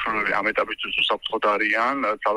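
A man speaking over a telephone line.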